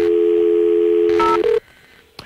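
Telephone dial tone, a steady two-note hum, then a single touch-tone key beep about a second and a quarter in. The dial tone cuts off just after it, leaving a short quiet gap.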